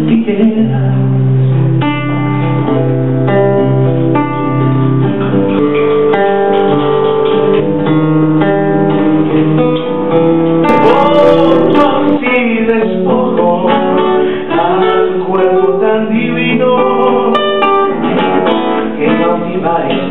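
Solo nylon-string classical guitar playing an instrumental passage of picked notes and chords, the notes ringing on.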